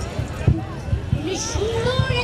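A group of women singing together in unison, holding long wavering notes, accompanied by tabla strokes, the strongest about half a second in, and a harmonium.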